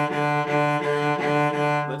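Cello bowed back and forth on one low note, with a bow change about twice a second. The bowing is done with a loose wrist that moves passively with each stroke.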